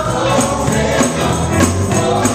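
Live gospel music: a vocal group singing together over a band of drum kit, electric guitars, bass and keyboard, with bright percussion strokes keeping a steady beat.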